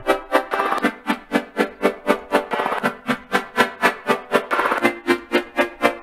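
Serum software synthesizer playing a chord progression with its oscillators detuned, the chords pulsing in a quick even rhythm of about four pulses a second and changing chord a few times.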